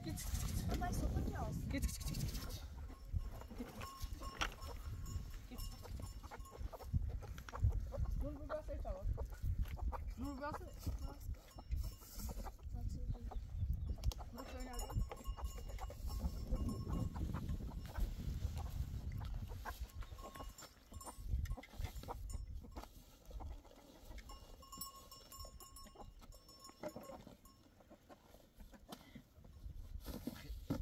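Goats bleating now and then in a farmyard, mixed with low human voices.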